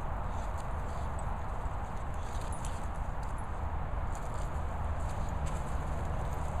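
Dogs moving about and rolling in grass: faint rustling and scattered light clicks over a steady low rumble.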